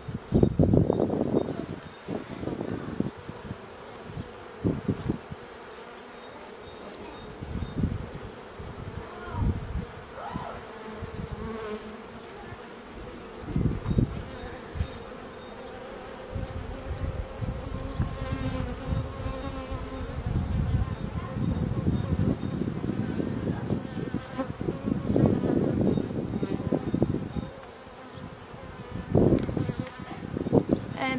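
A mass of honey bees buzzing around an open hive frame, a steady hum throughout. Low rumbling bursts come and go over it, heaviest in the last third.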